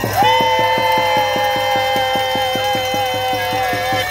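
Two horns holding long notes, one steady and one slightly wavering, over a fast, even drumbeat of about seven strikes a second: crowd noisemakers and drumming at a rally.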